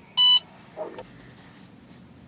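One short electronic beep from a handheld device, a single tone with bright overtones, heard just after the start. A faint low rustle follows.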